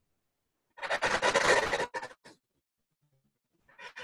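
Soft, breathy laughter from a person: a pulsing burst of laughing breaths about a second in, and a shorter chuckle near the end.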